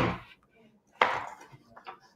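A single sharp knock on a hard tabletop about a second in, dying away quickly, then faint handling clicks as a page of a small paperback book is turned near the end.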